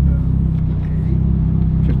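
Ferrari 458's V8 engine running at low revs as the car creeps forward at walking pace, heard from inside the cabin as a steady low drone.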